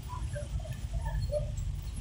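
Steady low rumble of a car driving slowly, heard from inside the cabin, with a few faint short sounds above it.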